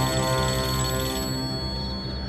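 Mobile phone ringing with an electronic ringtone over a steady background music score. The ring stops about a second and a half in.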